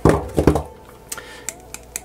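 Hands handling a plastic headset ear cup and picking up metal side cutters: a couple of loud knocks in the first half second, then a few light clicks.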